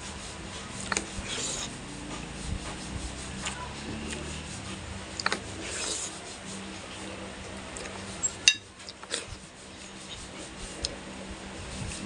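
Scraping and rubbing with scattered light clicks, the sounds of eating with a spoon and fork from a plate. A sharper click comes about eight and a half seconds in.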